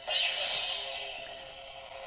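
Electronic sound effect from a lightsaber hilt's speaker, starting suddenly as the blade mode changes and fading away over about two seconds.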